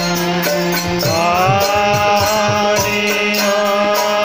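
Hindu devotional kirtan: voices chanting a long held melodic line over a steady drone, with percussion keeping a regular beat. A new sung phrase begins about a second in.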